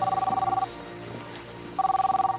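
Mobile phone ringing with a two-tone trilling ring: one ring about a second long at the start, then a second ring near the end, over soft background music.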